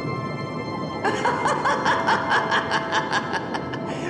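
A rapid run of laughter, about six short laughs a second, starting about a second in, over eerie background music with a held tone.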